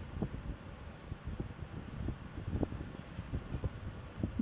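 Quiet background noise: a steady low rumble and hiss with faint, scattered short low knocks.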